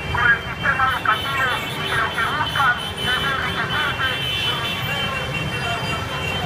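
Voices of a street protest march, most prominent in the first half, over a steady low rumble of street traffic.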